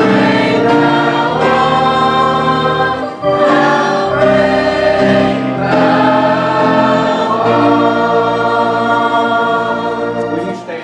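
Church choir singing a hymn in parts with organ accompaniment, the organ holding low bass notes under the voices.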